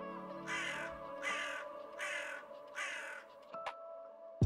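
Four harsh bird calls, evenly spaced, over soft background music that fades away.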